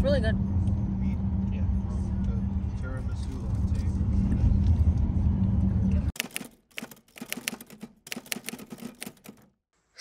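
Steady low rumble of a car's interior with a constant low hum, cut off abruptly about six seconds in. A quick irregular run of sharp clicks and rattles follows, then a brief silence.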